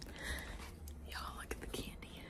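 A woman whispering, breathy and unvoiced, over a low steady room hum.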